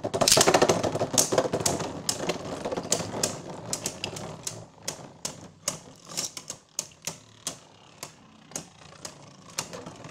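Beyblade Burst spinning tops clashing in a plastic Beystadium, each hit a sharp plastic click. The hits come thick and loud at the start, then thin out to single clicks about half a second apart as the tops lose spin.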